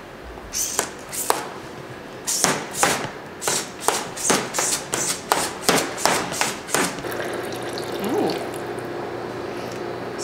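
Hot-drink dispenser machine making a cup of green tea. First comes a run of sharp, irregular clicks and spurts, then over the last few seconds a steadier sound of hot liquid pouring into a paper cup over a low hum.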